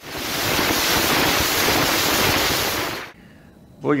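A loud, even rush of noise from battlefield weapon fire kicking up a large dust cloud. It lasts about three seconds and then stops abruptly.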